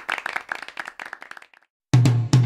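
Several people clapping their hands, the claps thinning out and fading away. Just before the end, drum-led music starts abruptly.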